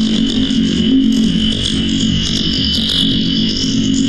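Experimental electronic noise music, run through a VST analog amplifier simulation: a dense, steady drone with a strong high band above a low hum, with no breaks.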